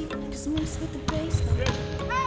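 Background music playing over an indoor volleyball rally, with several sharp hits of hands and forearms on the volleyball and a little speech.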